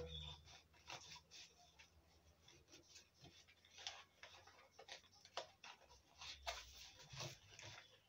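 Faint, irregular scratching and clicking of a knife cutting and scraping a plastic PET bottle to loosen the soil and seedling inside.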